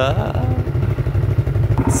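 Four-wheeler (ATV) engine running close by, a steady low rumble with an uneven pulse.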